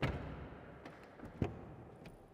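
Jeep Avenger's tailgate shutting with a thud right at the start, the sound dying away over about half a second. A second, shorter thud comes about one and a half seconds in.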